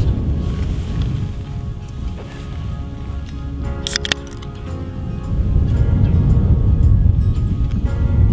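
Background music plays, and about four seconds in an aluminium soda can's tab is cracked open with a short, sharp pop and hiss.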